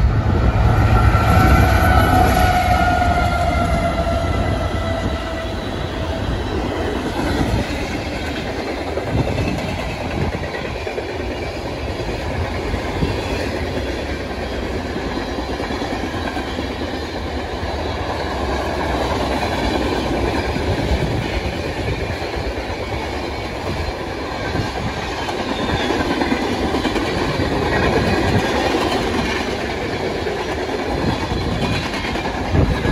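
Freight train passing: the lead CP AC44CWM and trailing NS SD70ACe diesel locomotives go by with a heavy engine rumble while the horn sounds for the first few seconds, its pitch dropping a little as it passes. Then a long string of tank cars rolls by with steady wheel and rail noise.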